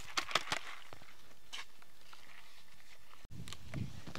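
A few light taps and rustles in the first half second, then steady quiet outdoor background noise, broken by a brief cut to silence near the end.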